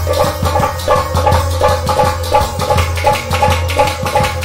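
Instrumental break of a Kashmiri wedding song: a quick hand-drum rhythm under a repeating melodic line, with no singing.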